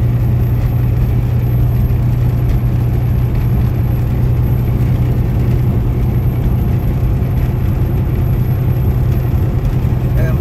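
Steady engine and road drone heard from inside a vehicle cruising on a highway, a constant low hum under even road noise.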